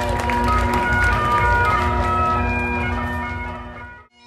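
Bagpipes playing a tune over steady drones, with a low rumble on the microphone; the music fades out just before the end.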